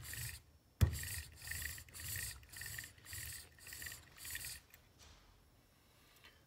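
Metal model locomotive chassis being handled and moved on a woven fabric table mat: a sharp knock about a second in, then a run of rubbing, scraping strokes about two a second that stops a little before the end.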